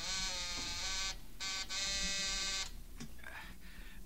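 House intercom phone buzzer buzzing, signalling the servant's quarters: a long buzz, a brief blip, then another long buzz that cuts off a little under three seconds in.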